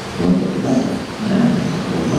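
A man's voice close on a handheld microphone, low and without clear words, in a few short stretches.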